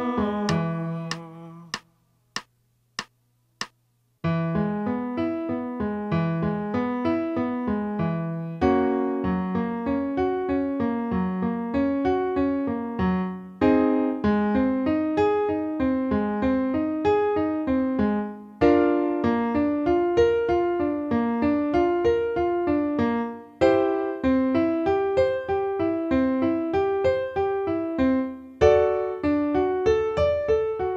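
Electric piano playing a vocal-exercise accompaniment. About two seconds in come four evenly spaced count-in clicks, then repeated arpeggio phrases of about five seconds each, with a short break between phrases.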